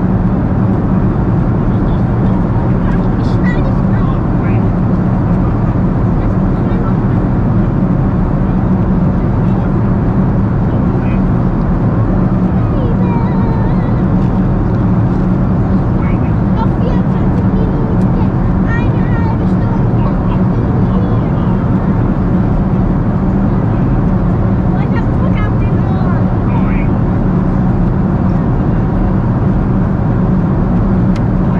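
Steady, loud cabin noise of a Boeing 747-400 in flight: a constant drone of engines and airflow with a strong low hum. Faint, indistinct voices come through in the background.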